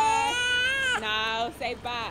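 A young child crying: one high, drawn-out cry of about a second, then a shorter one.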